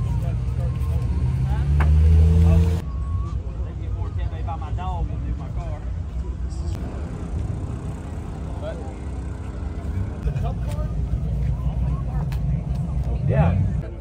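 Lamborghini Huracán Super Trofeo race car's V10 engine running at idle, louder for a moment about two seconds in, with a quick rev that rises near the end. People chat over it.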